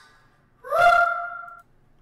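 Producer tag playing back from a beat: a short pitched sound that slides up, holds steady for about a second, then cuts off abruptly.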